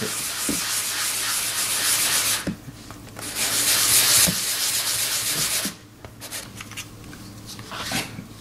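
Stone seal's face rubbed on very fine sandpaper, a steady scratchy hiss in two spells with a short break about two and a half seconds in, stopping a little before six seconds; then a few faint taps as the stone is handled. The sanding takes the wax polish off the new stone's face.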